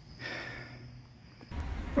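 Faint, steady high-pitched cricket trill with a short breathy sound near the start. About three quarters of the way through, it cuts to the low rumble of a car on the road.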